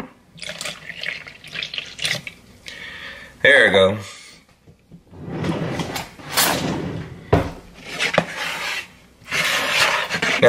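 Milk poured from a plastic measuring cup into a plastic mixing bowl of pudding mix, in uneven splashing pours with longer rushing stretches later on. A short vocal sound comes about three and a half seconds in.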